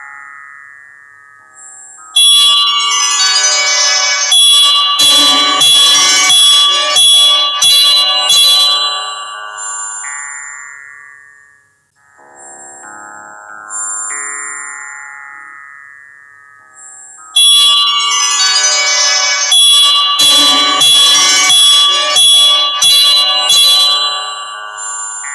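Instrumental background music of struck, ringing notes that fade away. A dense phrase begins about two seconds in, dies down near the middle, then starts again a little past halfway, as a repeating loop.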